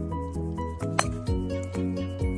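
Background music with sustained notes and a bass line. About halfway through, a single sharp click of a driver's clubface striking a golf ball off the tee.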